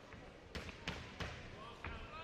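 Four sharp smacks from a boxing bout in progress in the ring, spaced less than half a second apart, over a background of voices.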